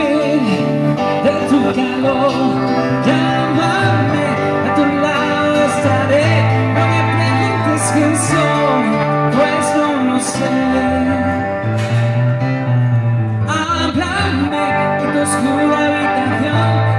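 Live amplified pop-rock played by a duo on keyboard piano and guitar, heard through PA speakers, with steady low bass notes changing every second or two under the chords.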